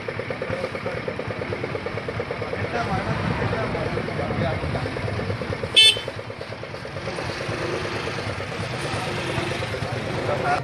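Street traffic noise: an engine idling with a rapid even pulse under background voices, and one short vehicle horn honk just before six seconds in, the loudest sound.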